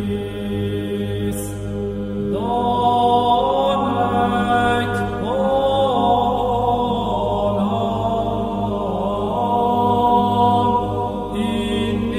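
Slow chanting voices over a steady low drone. About two seconds in, a higher line of long held notes comes in and moves step by step between pitches.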